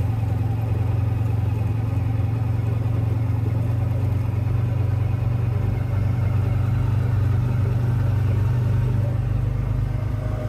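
Engine of an open-sided utility vehicle running steadily as it drives along, a constant low drone.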